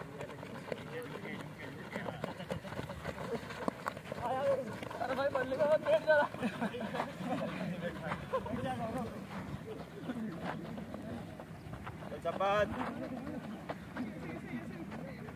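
Young men's voices calling out, loudest about four to six seconds in and again near the end, over the shuffling of many feet on a dirt ground as trainees squat-walk carrying logs.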